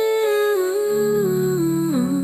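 A singer humming "hmm": one long held note that steps down in pitch across several small steps. Soft accompaniment plays under it, with a low held chord coming in about a second in.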